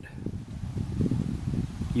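Wind buffeting the microphone: an irregular low rumble with no engine or tool sound in it.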